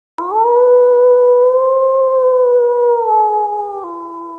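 A wolf's howl: one long call that rises quickly at the start, holds steady, then slides down and drops a step near the end.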